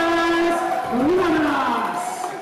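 Ring announcer's voice over the arena PA, drawing the winner's name out in one long held call, then rising and falling as it trails off.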